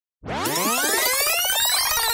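Synthesized electronic riser for a logo intro: a stack of tones gliding upward in pitch together with a fast pulsing flutter, starting suddenly just after the beginning.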